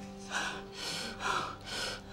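A frightened man breathing in quick gasps, about four breaths in two seconds, as he panics. Underneath them runs a faint, steady held music drone.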